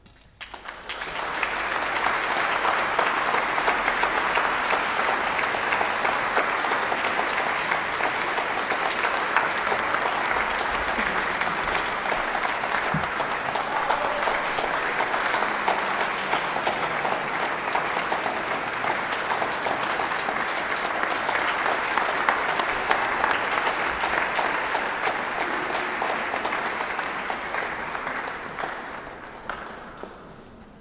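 Audience applauding: the clapping starts about a second in, holds steady, and dies away near the end.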